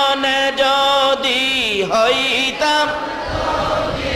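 A man's voice chanting in long drawn-out, held notes that waver and slide down in pitch between them, in the sung style of a Bangla waz sermon.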